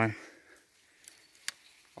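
Near silence after a man's short spoken phrase, broken by a faint tick about a second in and one sharp click about a second and a half in.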